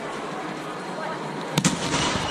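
Two sharp slaps of hands striking a volleyball in quick succession, about a second and a half in, during an attack at the net. Players' voices murmur in the background.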